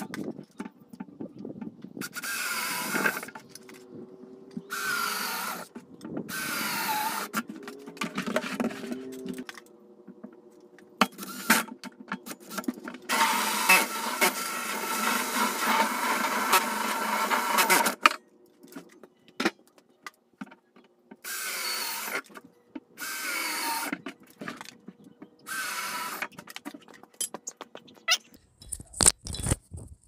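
Cordless drill cutting holes through the plastic top of a 55-gallon barrel, running in a series of short bursts of about a second each. One longer cut with a hole saw, about five seconds, comes around the middle.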